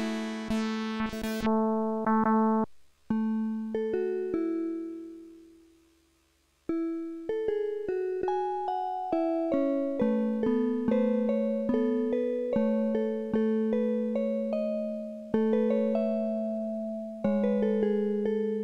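Circuit-bent Yamaha PSS-560 PortaSound keyboard played in a freestyle jam: a run of pitched notes that each die away. There is a bright, buzzy burst in the first second and a half, and the sound fades out a few seconds in before the notes start again about seven seconds in.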